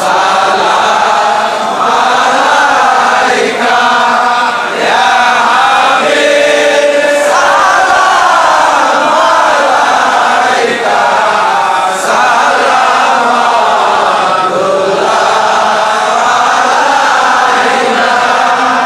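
A large crowd of men chanting a Sufi devotional chant together, loud and without pause, with a held note about six seconds in.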